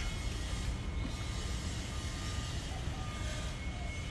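Steady outdoor background noise: a low rumble under an even hiss, with a faint steady high tone and a few faint short peeps, and no distinct events.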